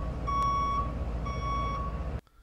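Truck backing-up sound effect: a reversing alarm beeping at one steady pitch, about once a second, over a low engine rumble.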